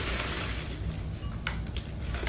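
Tissue paper rustling and crinkling as a wrapped mug is pulled out of a paper gift bag, with a sharp click about one and a half seconds in.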